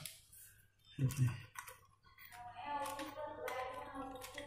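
Small clicks and taps of hands handling wires and the driver board inside an aluminium LED street-light housing, with faint music in the background from about halfway.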